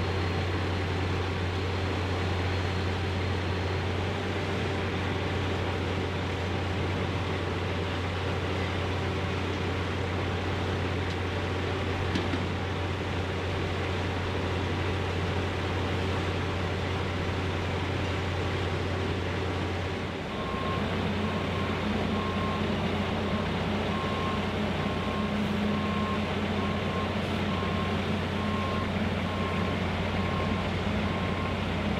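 Steady diesel engine drone from heavy track-work machinery. About two-thirds of the way in the sound shifts, and a backup alarm starts beeping over the engine.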